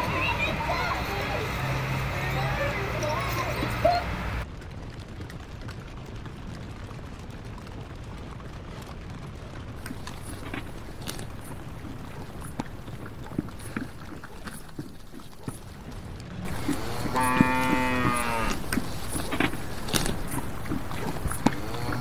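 Farm-animal sound effects: a few seconds of busy background sound, then a quieter stretch with scattered faint clicks, and then a livestock call, one long cry that rises and falls in pitch, with a second call starting at the very end.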